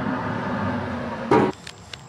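Steel smoker lid being shut: a single sharp metal clank about a second and a third in, over a steady rush of background noise.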